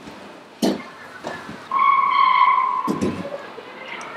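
Stretched canvases being stacked onto a metal shelf: a sharp knock under a second in, then a steady high squeak lasting over a second as a canvas slides against the shelf, and another knock a little before the end.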